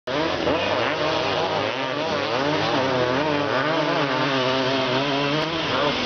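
Several dirt bike engines racing together, loud and overlapping, their pitches rising and falling as the riders open and close the throttle.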